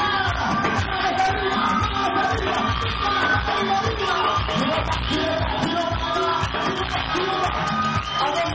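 Live cumbia band music with a steady beat and singing, and the crowd shouting along.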